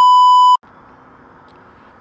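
Loud, steady, high-pitched test-tone beep of the kind played with TV colour bars, cutting off abruptly about half a second in. Faint steady background noise follows.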